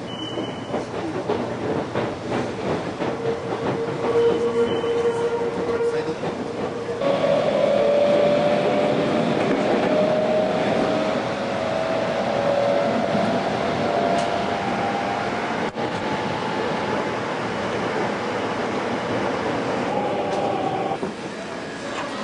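Running noise inside a moving commuter train car: wheels on the rails and a steady rumble, with a whine that rises in pitch from about three seconds in to about fourteen seconds as the train gains speed.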